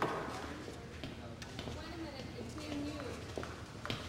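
Faint background voices with scattered light knocks and footsteps.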